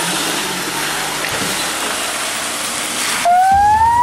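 Ambulance van moving off close by: a steady rushing of engine and road noise. About three and a quarter seconds in it cuts abruptly to a louder electronic tone that rises steadily in pitch, a news logo sting.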